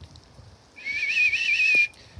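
A warbling whistle of about a second, starting a little before the middle, calling the pigeons off the roof to come in.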